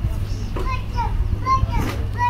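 A woman speaking in Kinyarwanda into a handheld microphone, her voice carried over a loudspeaker, with a steady low rumble underneath.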